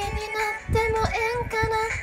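A woman's voice singing a Japanese pop song over a beat, in a few short held notes.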